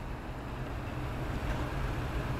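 Maxxair 5100K roof vent fan running at a low speed setting: a steady rush of air with a low, even motor hum.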